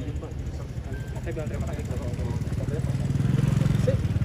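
Motorcycle engine idling with an even low pulse, getting louder toward the end, under scattered voices.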